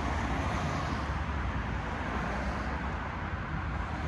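Steady low rumble of distant road traffic, with no distinct events.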